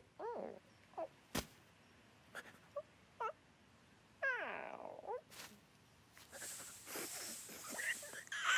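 A cartoon bird character's wordless vocal sounds: a few short squeaks and grunts, then a longer falling whine about four seconds in. A swelling rush of noise follows near the end.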